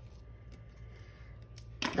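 Quiet handling of sticker paper as fingers press a clear overlay sticker onto a planner page: a few faint soft ticks over a low steady hum. A voice comes in near the end.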